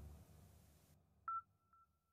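Near silence, with a faint steady electronic tone coming in about halfway through, marked by a couple of soft clicks.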